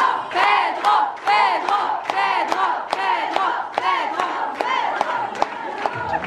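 Audience cheering and screaming loudly, many high voices overlapping in repeated rising-and-falling calls, with scattered claps.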